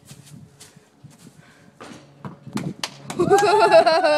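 A person laughing loudly in a drawn-out, high-pitched laugh starting about three seconds in, after a quiet stretch with a few faint knocks.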